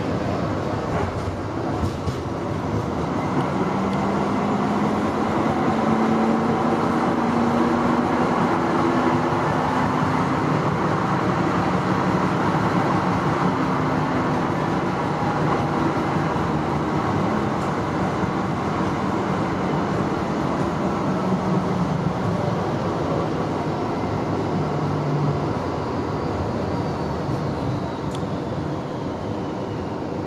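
Ride noise inside a Frankfurt VGF Pt-type tram car under way: a steady rumble of wheels on the rails, with a faint motor whine that edges up in pitch in the first ten seconds as it gathers speed. Over the last few seconds a thin whine falls in pitch as the tram slows.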